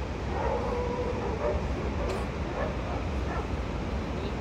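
A dog barking and whining in the distance: one longer drawn-out call near the start, then a few short calls, over a steady low rumble.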